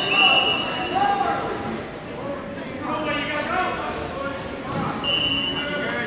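Voices and shouting echoing in a large sports hall, with two high squeaks about a second long each, one at the start and one about five seconds in.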